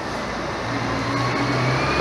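City bus engine approaching on the street, a low steady drone growing louder, with a faint rising whine over traffic noise.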